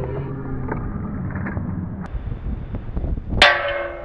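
A single sharp metallic clang about three and a half seconds in, ringing on and fading over about a second. Before it there is low rustling noise with small clicks.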